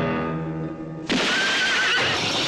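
A held orchestral chord, then about a second in a sudden loud horse whinny with a wavering pitch, over a burst of noise: the horse driven out from under a hanging man.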